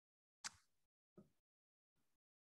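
Near silence, broken by one brief soft click or tap about half a second in and a fainter one a little after a second.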